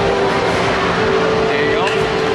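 Loud, steady din of a busy arcade: voices mixed with game-machine sounds that include engine noise like a racing game. There is a short sharp click near the end.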